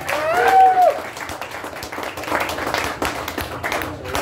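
Small audience clapping at the end of a live song, with a single voice calling out briefly in the first second.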